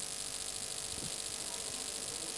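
Steady low electrical hum with faint hiss, the idle noise of a microphone and PA system between announcements.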